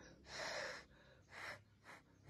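A person blowing short puffs of breath on a tightly layered flower to open its petals: one longer puff, then two short ones.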